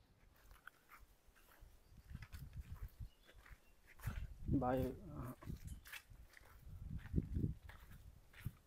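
A single short animal call with a clear pitch about four and a half seconds in, among scattered faint low knocks.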